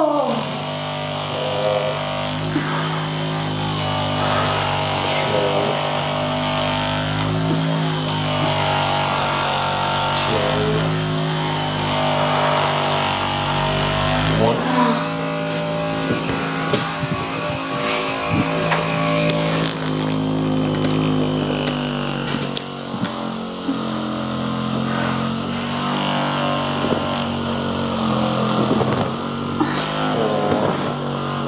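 Percussive massage gun running against the leg and glute muscles: a steady motor buzz, whose tone shifts briefly about halfway through and again later as the gun is moved.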